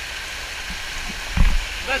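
Water rushing steadily down a rock chute into a pool, a constant hiss, with one short thump about one and a half seconds in.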